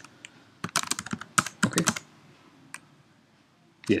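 Computer keyboard typing: two quick runs of key clicks about a second in and again around a second and a half, as short shell commands are entered, then one lone key click near three seconds.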